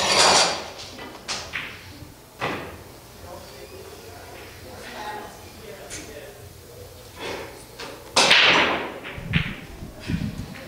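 Pool balls clacking on a pool table: a sharp cue-and-ball strike at the start, followed by a few lighter ball knocks over the next couple of seconds and a louder clatter about eight seconds in, over faint background talk in the hall.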